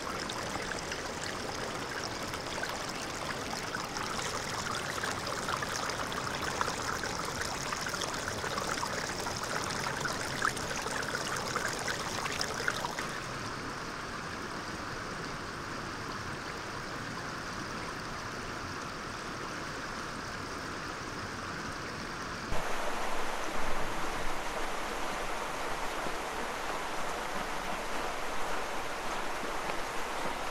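Forest brook water trickling and running over stones, recorded close with sensitive field microphones. The sound changes abruptly twice, about 13 s and about 22 s in, as it cuts to different stretches of stream, and the last stretch is louder and more uneven.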